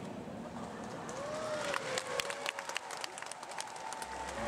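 Scattered hand claps in a large hall, a cluster of sharp separate claps starting a little under two seconds in and thinning out before the end, over a faint distant voice.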